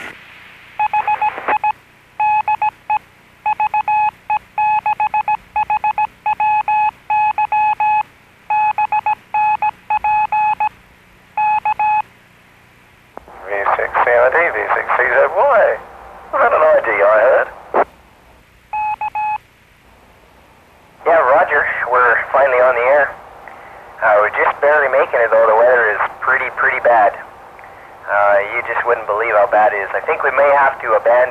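A radio tone keyed on and off in short and long beeps for about eleven seconds, in the manner of a Morse-code station identifier from the VE6HWY amateur repeater. A single short beep follows later, between stretches of voice heard over the radio.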